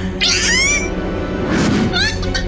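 A cartoon chick's high-pitched squeal, gliding upward in pitch for about half a second, over background music. A short noisy swish follows near the end.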